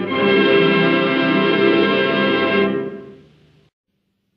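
Orchestra with brass holding the closing chord of a song in an old 1948 radio broadcast recording; the chord is cut off about three seconds in and dies away to silence.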